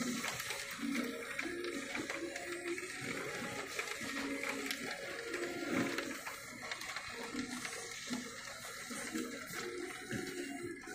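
Heavy rain hitting the closed window glass as an even hiss with many small ticks, with faint music playing in the room.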